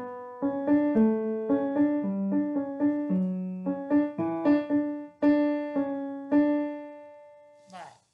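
A piano-voiced keyboard playing a simple one-note-at-a-time melody, about two to three notes a second, zigzagging between higher and lower notes and ending on a longer note that fades away.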